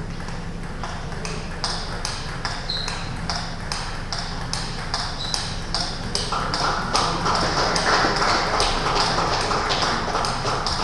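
Table tennis rally: the ball clicks off the rackets and the table about three times a second. From about six seconds in a louder wash of noise joins the clicks.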